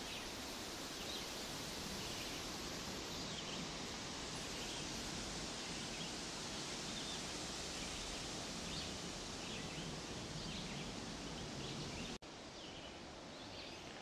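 Quiet outdoor garden ambience: a faint, steady hiss of background noise with no distinct events. The sound drops out for an instant about twelve seconds in, where the recording cuts, and continues slightly quieter.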